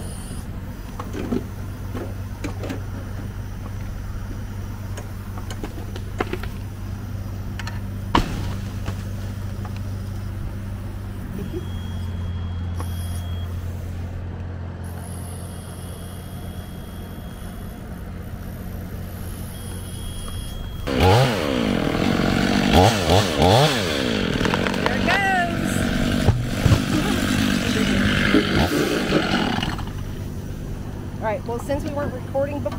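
A steady low engine hum, then, about two-thirds of the way through, a Stihl chainsaw comes in loud and revs up and down repeatedly as it cuts into a pine trunk.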